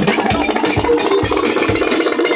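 Electronic dance music played from a DJ's CDJ decks and mixer, with a steady kick drum about two and a half beats a second under a dense mid-range layer.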